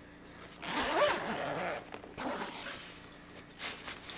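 Zipper on a fabric bag being pulled open: one long pull, then shorter tugs.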